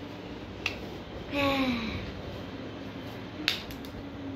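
Plastic water bottle clicking as it is handled: one sharp click near the start, then another sharp click near the end followed by a few quick smaller clicks. Around the middle there is a short vocal sound that falls in pitch.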